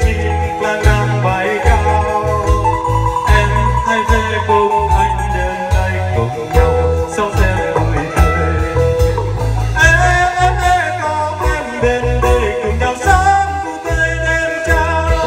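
A man singing a Vietnamese pop song into a microphone, backed by a live band of electric guitar, keyboard, bass and drums, played through a PA.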